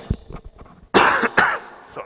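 A man coughing into a handkerchief, picked up by his headset microphone: two hard coughs about a second in, then a smaller one.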